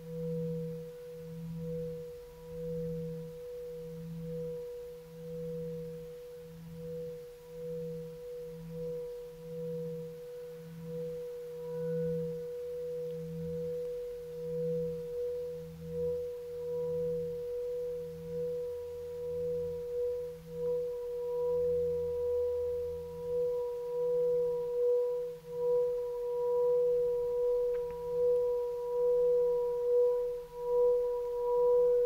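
Singing bowl sounding a long, steady tone over a lower hum that pulses slowly, a little more than once a second. It grows a little louder toward the end.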